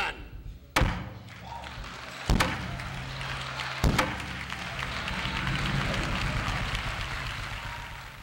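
A wooden gavel rapped three times on a pulpit, about a second and a half apart, formally opening the celebration, while a congregation applauds, swelling and then dying away.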